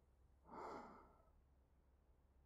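A man's soft sigh, a single short breath out heard close to the ear on a dummy-head recording, about half a second in.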